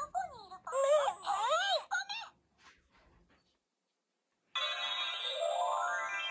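Mem-Mem talking plush doll's built-in speaker playing a squeaky, sing-song character voice for about two seconds as the toy is pressed. After a short pause, a chiming electronic jingle with a rising run of notes starts near the end.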